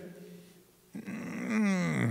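A man's drawn-out wordless vocal sound, starting about a second in and falling steadily in pitch, heard through a microphone in a reverberant hall.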